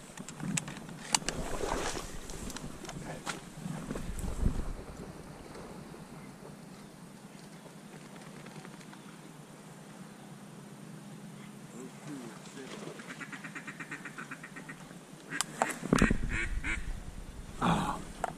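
Ducks quacking: a rapid run of short quacks lasting a few seconds past the middle. Rustling and handling knocks come before it, and louder ones near the end.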